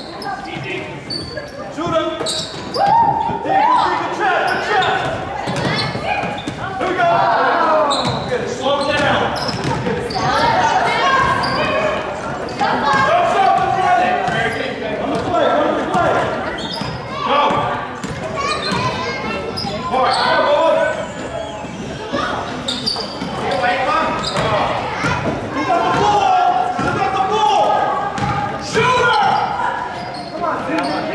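Basketball dribbled on a hardwood gym floor, among shouting voices of players and spectators, all echoing around the gymnasium.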